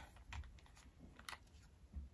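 Faint, scattered clicks of a small plastic cosmetic container being opened and handled.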